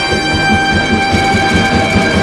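Orchestra playing an instrumental passage: brass holding a sustained chord over a fast, pulsing low rhythm, about five or six beats a second.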